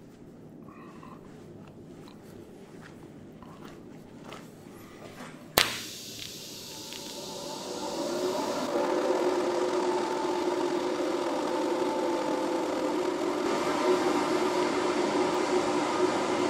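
Faint handling noise, then a TIG welding arc from a YesWelder TIG-200P is struck on freshly cleaned steel with a sharp crack about five seconds in. It settles into a steady buzzing hiss that grows louder over the next few seconds as the current comes up, then holds steady.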